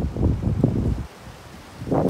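Wind buffeting the microphone, a low irregular rumble that eases off about a second in.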